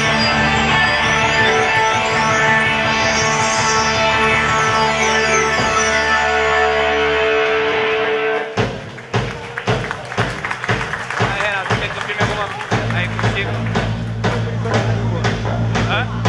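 A live rock band with electric guitar, keyboards, bass and drums plays with vocals. The first part is a dense wall of sustained chords. About eight and a half seconds in it switches abruptly to a sparser, drum-driven passage, and a steady low bass note joins near the end.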